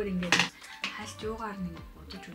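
One sharp clack about a third of a second in, hard plastic cosmetic packaging knocking as a makeup compact is picked out of the box, over background music.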